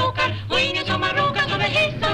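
Female vocal trio singing a Swedish song over a band accompaniment with a steady bass line.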